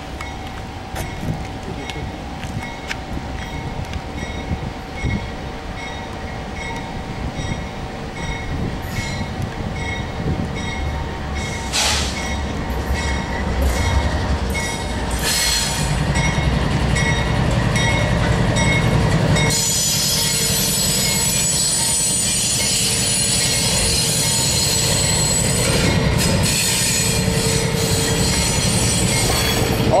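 CN freight train of auto-rack cars approaching and passing close by, growing louder. Its diesel locomotives rumble past around the middle, then from about two-thirds of the way in the cars' wheels go by with a steady high-pitched squeal and clatter.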